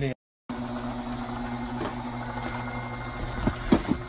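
Conveyor belt and motor of a computer date-coding (printing) machine running with a steady hum after a short break in the sound. A few sharp knocks near the end, the loudest moment.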